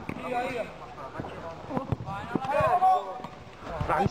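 Men's voices calling out, with a few short knocks between the calls.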